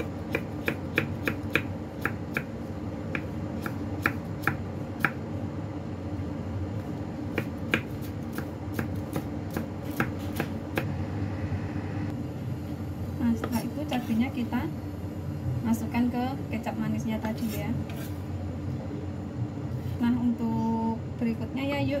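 Kitchen knife chopping red chillies finely on a wooden chopping board: a run of quick, sharp knocks of blade on board, about two a second, for roughly the first half. Faint background voices follow in the second half.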